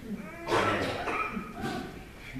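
Congregation saying "Amen" together in response to the prayer: one drawn-out spoken word from many voices, starting about half a second in and lasting just over a second.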